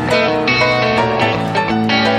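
Instrumental passage of a live band: electric guitar playing plucked notes over grand piano, with no singing.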